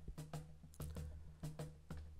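Quiet background music: light percussion taps, about eight in two seconds, over a low steady tone.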